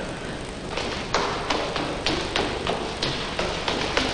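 A run of sharp taps or knocks, about three a second, starting about a second in and running on unevenly.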